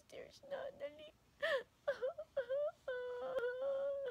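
A woman fake-crying: a run of short whimpering sobs, then a long held wailing note from about three seconds in. A single sharp click sounds near the end.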